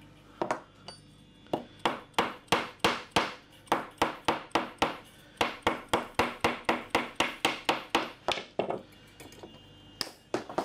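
Fretting hammer tapping fret wire down into the slots of a guitar fretboard: a steady run of quick, sharp taps, about three or four a second, stopping near the end.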